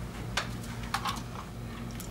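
Three or four light clicks and taps of small toy cars being pushed and handled on a tabletop.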